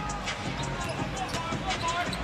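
A basketball being dribbled on a hardwood arena court, with repeated bounces over the steady noise of the crowd.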